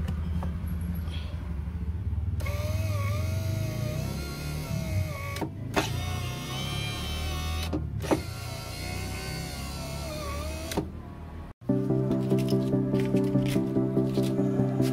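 Repaired power window motor of a 2005 Honda Jazz, its worn brushes replaced, test-running the window regulator. It whines in three runs with brief pauses between them as the switch is pressed again. Background music comes in near the end.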